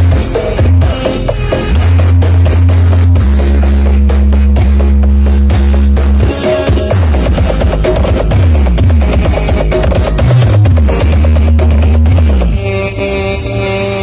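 Music played very loud through large carnival sound-system speaker stacks (sound horeg), dominated by deep sustained bass notes with a steady beat. Through the middle the bass slides downward in repeated drops before settling on long held notes again, and the music changes character shortly before the end.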